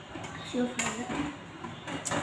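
Kitchen dishes and utensils clinking and knocking: a few light knocks and one sharper clink a little under a second in.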